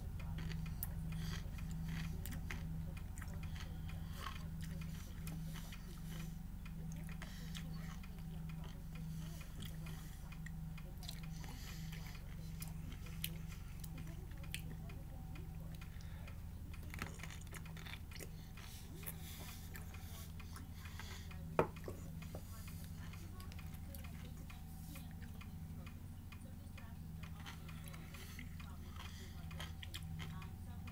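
Faint biting and chewing of a large dill pickle, with scattered small crunchy clicks and one sharper crunch a little past the middle. Under it runs a low steady hum with a regular ticking pulse.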